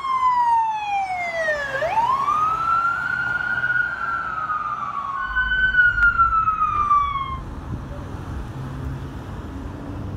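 Emergency vehicle siren wailing in slow sweeps. The pitch falls, swings back up about two seconds in and slides down again, and a second falling sweep follows. It stops a little past the middle, leaving low street and traffic noise.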